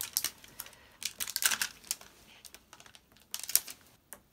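Light clicks, taps and paper rustles from handling stamping supplies on a cutting mat: a card set down and a clear acrylic stamp block picked up. The taps come in small clusters, with a cluster about a second in and the sharpest tap near the end.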